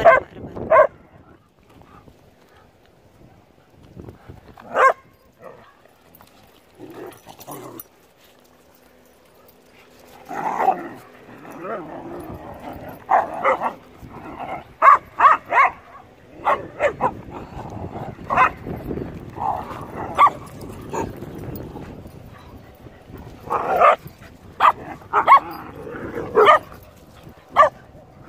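Several dogs barking in short, scattered barks: a few single barks early on, then frequent barking from about ten seconds in, easing off near the end.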